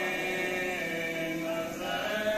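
Men's voices chanting a marsiya, an Urdu elegy, with no instruments: a lead voice on the microphone joined by a chorus, in long held notes that shift pitch near the end.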